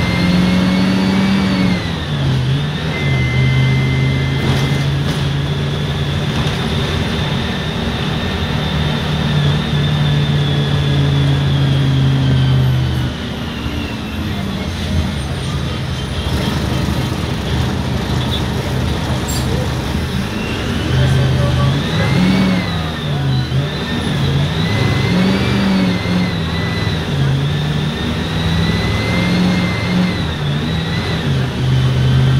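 Front-mounted diesel engine of a Mercedes-Benz OF-1519 city bus heard from inside the cabin while driving: it pulls at a steady pitch, eases off a little under halfway through, then rises and falls in pitch several times as the bus accelerates and changes gear in traffic.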